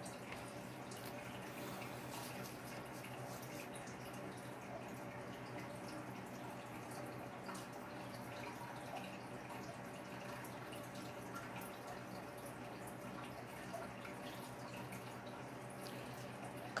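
A faint steady low hum with scattered soft crackling ticks: a hot pyrography pen tip burning into wood.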